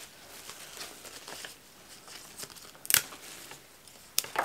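Soft rustling and crinkling of eucalyptus foliage and stems as they are handled and pushed into the floral arrangement, with one sharp click about three seconds in.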